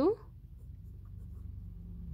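Ballpoint pen writing words by hand on lined paper.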